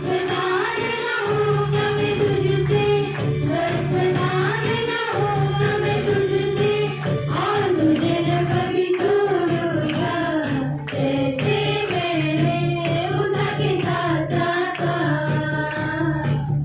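Several women singing a devotional song together through microphones and a PA system, over a steady percussion beat.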